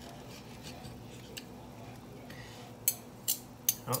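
Steel knife and fork cutting through a soft egg on toast, clicking against a ceramic plate, with three sharp clinks near the end.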